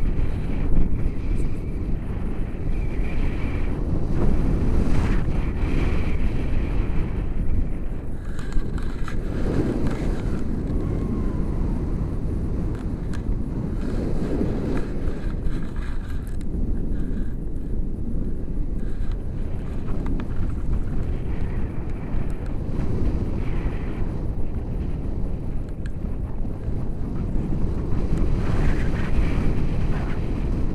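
Wind buffeting the microphone of a handheld camera in paraglider flight: a steady, low rumbling rush of air.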